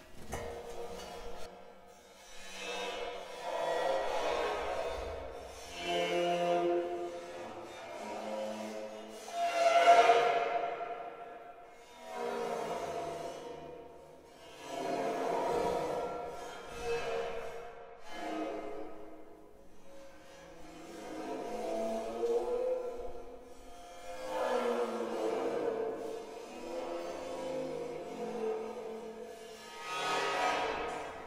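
A busted cymbal bowed in about ten swelling, ringing strokes of a couple of seconds each, the loudest about ten seconds in. Its pitch shifts as the vibrating cymbal is lowered into a tub of water.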